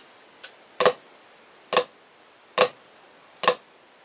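Four flams struck on a drum practice pad, evenly spaced at a little under one a second, with a faint tap shortly before the first.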